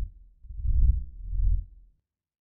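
Closing sting of the logo animation: two deep, low bass pulses about two thirds of a second apart, then the sound cuts off just before the end.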